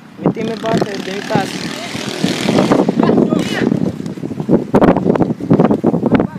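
Players and coaches shouting short calls across a football pitch, several voices overlapping in bursts, with a noisy rush on the microphone about two to three seconds in.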